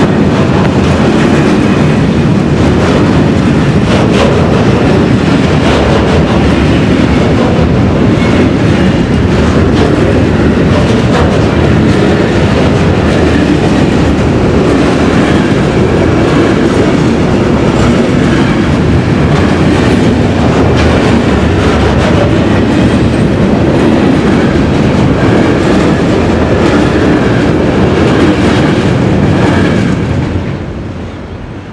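Freight train of log-loaded wagons rolling past at close range: a loud, steady rumble with wheels clattering over the rail joints. The last wagon clears at the very end.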